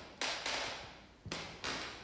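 Two soft breaths about a second apart, each lasting about half a second, in a pause in a woman's speech.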